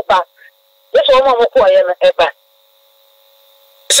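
Speech in short phrases, with a faint steady electrical hum heard in the pauses.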